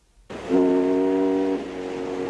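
A held musical chord, several steady notes sounding together, as at the close of a production-logo jingle. It starts about a third of a second in after a brief gap, and its upper notes drop out a little past the middle.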